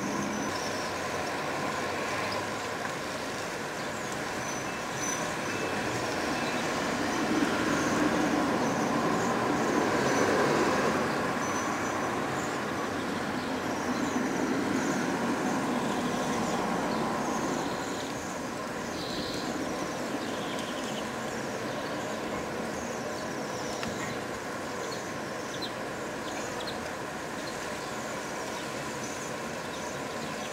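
Distant transport rumble, steady with a couple of swells in the first half before easing off. Above it come many short, thin, high calls of Bohemian waxwings.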